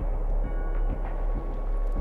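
Intro music of a rap cypher video: a deep, steady bass drone with faint ticks over it.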